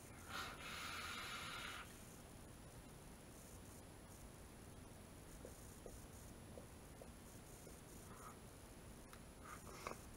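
A short airy hiss, about a second and a half long, of a drag taken on a vape mod's dripping atomizer, then near silence with a few faint ticks.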